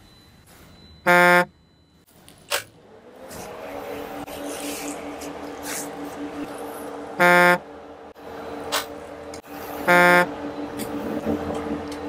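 Switching on systems in a Kamaz rally truck cab: three short, loud beeps, about a second, seven seconds and ten seconds in, each the same pitch. From about three seconds in the cab's ventilation fans start and run with a steady hum.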